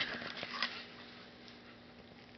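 A brief rustle with a few light clicks, then quiet room tone with a faint steady hum.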